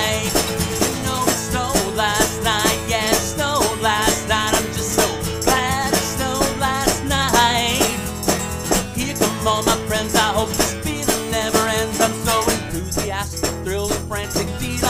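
A man singing a children's song while strumming a guitar in a steady rhythm.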